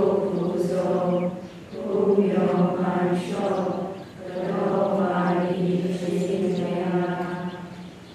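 Buddhist nuns chanting together in unison, in three long sustained phrases with short breaks between them. The chant trails off near the end.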